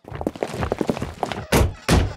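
Footsteps and clatter on a station platform, then wooden railway coach doors slammed shut: two heavy thuds near the end.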